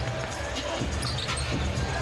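Live sound of a basketball arena during play: steady crowd noise with a basketball being dribbled on the hardwood court, a few short knocks.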